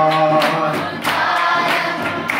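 A group of girls and women singing together, holding long notes. The singing dips briefly about a second in, then a new line starts.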